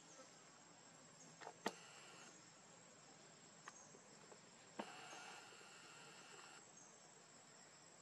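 Faint insects buzzing, with a steady high whine throughout and a louder buzz from about five to six and a half seconds in. A few sharp clicks sound over it, the loudest about two seconds in.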